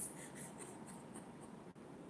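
Faint scratching and rustling handling noise over quiet room hiss, with a few soft ticks in the first second and a brief drop-out in the sound near the end.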